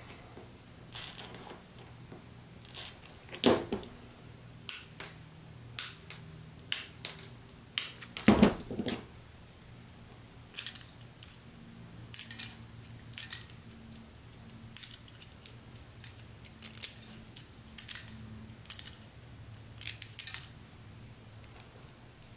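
Small pieces of art glass being cut and shaped with hand tools: irregular sharp clicks and short scratchy snips, with a heavier knock about eight seconds in.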